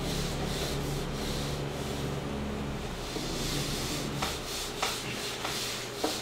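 A whiteboard duster rubbing back and forth over a whiteboard, wiping off marker writing.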